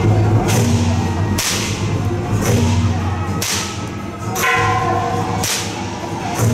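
Taiwanese temple ritual rope whip (fa bian) cracked over and over as it is swung, with sharp cracks about once a second and every second crack louder.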